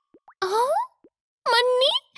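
Cartoon character's wordless voice sounds: a short rising vocal sound about half a second in, then a longer one near the end, with light plopping footstep effects between them.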